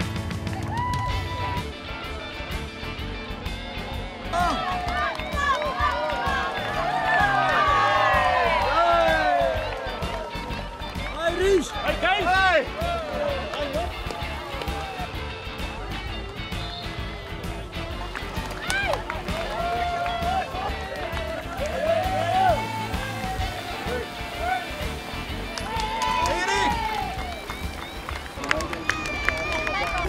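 Music with many voices calling and shouting over it, no single words clear.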